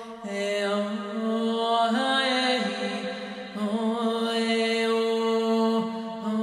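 A woman's solo voice chanting wordless long held tones, a light-language style vocal toning. The notes step up and down in pitch, with brief breaths between phrases.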